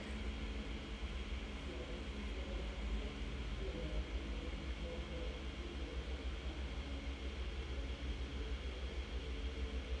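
Faint steady hum inside a car's cabin, mostly a low rumble with no distinct events.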